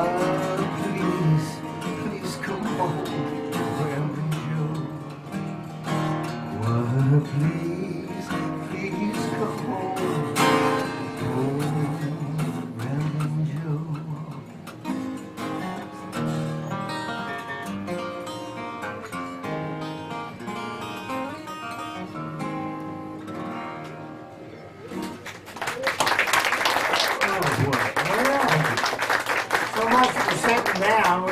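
A custom-built acoustic guitar played solo, picking out the closing instrumental bars of a song, which grow quieter and sparser. About 25 seconds in, audience applause breaks out.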